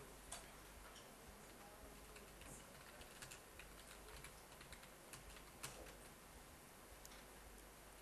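Near silence with faint, scattered computer keyboard keystrokes: a few soft clicks over a low room hum.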